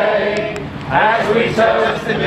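A group of guests singing a song together from song sheets.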